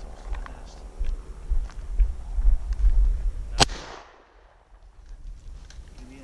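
A single shotgun shot about three and a half seconds in, its report trailing off in a short echo. Before it, a low rumble sits on the microphone.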